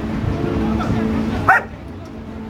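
A puppy gives one short, high-pitched yip about one and a half seconds in, over background voices.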